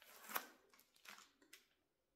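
Faint rustling, heard as a few brief scratchy bursts; the loudest comes about a third of a second in and two smaller ones follow about a second later.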